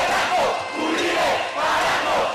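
A large crowd of protesters shouting together, many voices at once, surging in waves with brief dips.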